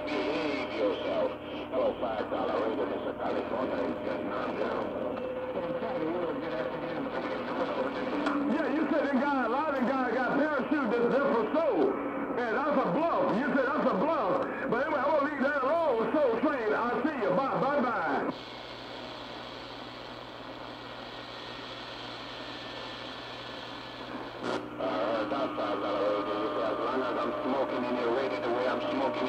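CB radio channel 6 (27.025 MHz AM) through a shortwave receiver's speaker: garbled, warbling voices of distant stations under static, mixed with steady whistling tones from other carriers. About 18 seconds in the signal drops to plain hiss, and the tones and voices come back near the end.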